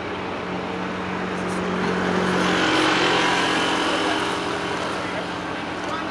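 A car passing by on the road, its engine and tyre noise swelling to its loudest about three seconds in and then fading.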